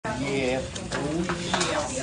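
Indistinct voices of several people talking over a rustling, scraping noise with a few clicks.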